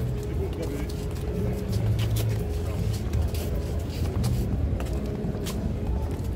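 Crowd of people talking over one another, indistinct, over a steady low rumble, with scattered short clicks.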